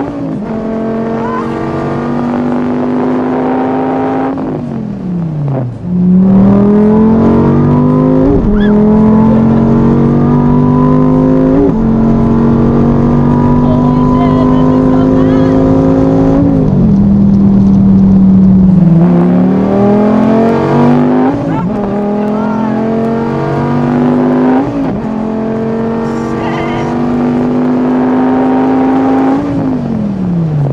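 SRT Viper's V10 engine under hard acceleration, heard from inside the cabin: the pitch climbs through each gear and drops sharply at each upshift, about seven times. Twice the note falls away in a long glide as the throttle is let off, once a few seconds in and again near the end.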